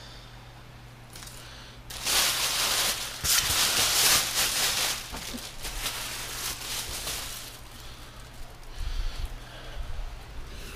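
Rustling and handling noise, loudest for about three seconds starting two seconds in, then lighter rustling and a few low thumps near the end as a small laptop desk is picked up and moved.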